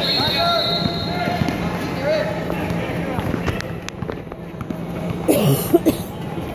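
Basketball game sound in a large echoing gym: players' and spectators' voices, a ball bouncing on the hard court, and a loud shout near the end.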